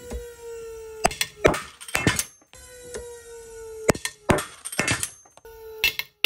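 A homemade Dyneema soft-shackle cave anchor failing under tension at about 17 kN as the soft shackle tears through its metal ring: sharp cracks followed by clattering metal. The failure is heard twice, and a third begins at the very end. Under it runs a steady whine from the pull-testing machine, falling slightly in pitch.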